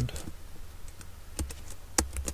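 Keystrokes on a computer keyboard: a few scattered key clicks, the loudest right at the end.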